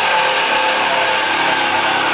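Live distorted electric guitars and bass holding one sustained, loud chord, steady throughout with no drum hits.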